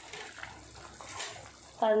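Faint bubbling of fish curry boiling in an open clay pot.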